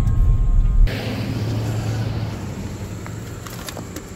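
Low rumble of a moving car heard from inside the cabin, cut off abruptly about a second in. A quieter, even outdoor hiss follows, with a few faint clicks near the end.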